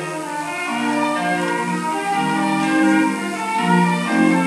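Recorded choir music with long held notes in several parts, played back through the speakers of a small compact stereo system.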